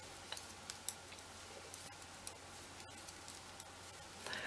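Faint, irregular light clicks of metal knitting needles as stitches are knitted, over low steady room hiss.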